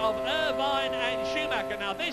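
McLaren-Mercedes Formula One V10 engine heard from the onboard camera, a steady high-pitched whine held at constant revs at full throttle down a straight, with commentary speech over it. The engine sound cuts off at the end.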